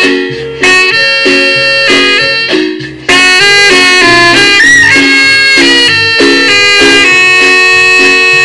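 Live band playing an instrumental passage: two saxophones carry the melody over marimba and electric bass. The phrase breaks off briefly just before three seconds in, then the band comes back in at full level.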